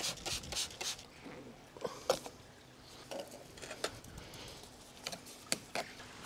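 Scattered light scrapes and clicks of a steel trowel working wet cement mortar into a gap between bricks.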